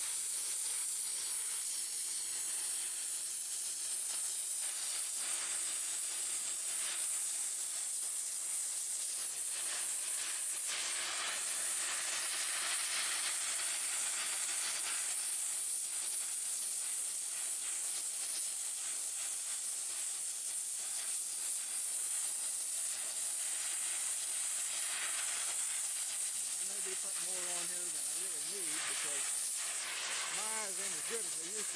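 Gas torch flame hissing steadily as it heats the joint between a copper rigid coaxial transmission line and its flange for silver soldering.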